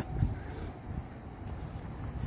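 Outdoor street ambience while walking: an uneven low rumble, with a faint steady high buzz of insects, typical of cicadas or crickets in summer heat.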